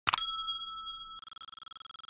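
Notification-bell sound effect: a click followed by a bright bell 'ding' that rings out and fades. About a second in, the ringing turns into a fast, fluttering shimmer.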